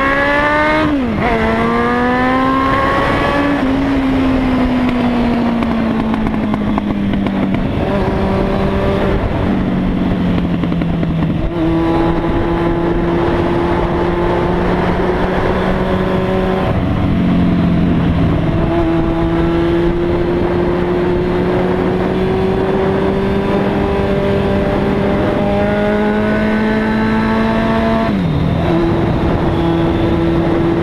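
Motorcycle engine under way, rising in pitch as it accelerates, then dropping at several gear changes and holding steady while cruising. Constant wind rush on the chin-mounted helmet camera.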